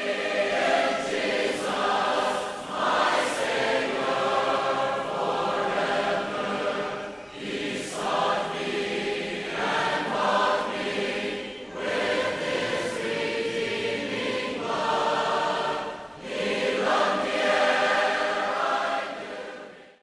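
A group of voices singing a hymn together in sung phrases a few seconds long. It is the invitation song that closes the sermon.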